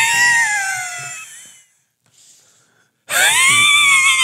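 A man laughing hard in two long, high-pitched peals. The first trails off over the first second and a half, then comes a faint breath, and the second starts about three seconds in.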